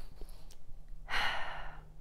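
A woman's sigh: one breathy exhale of about a second, starting about a second in.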